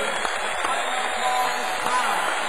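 Steady background noise with faint, indistinct voices.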